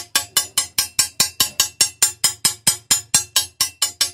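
Light, quick taps on a 1 cm thick glass sheet along its scored line, about five a second, each with a short ring. The tapping runs the score through the glass before it is snapped apart.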